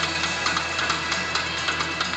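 Live band music with a steady drumbeat, over a steady low hum.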